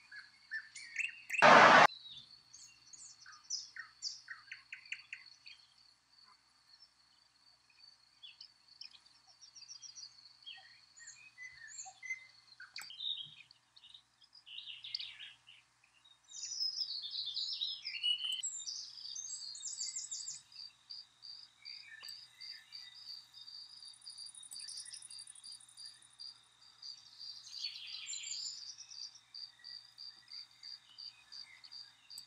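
Wild birds chirping and calling in varied short notes and trills over a thin, steady, high insect-like trill. In the second half an evenly repeated high chirp runs on. About a second and a half in there is one brief, loud burst of noise.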